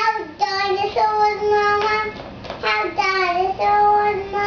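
A young child singing a made-up tune in a few long held notes, with short dips in pitch between them.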